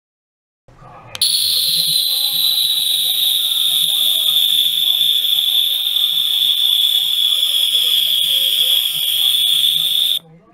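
Rechargeable 50 kHz ultrasonic cleaner switching on about a second in and running in tap water: a loud, steady, high-pitched whine with a hiss above it, the audible noise of cavitation, its pitch sagging slightly before it cuts off at the end.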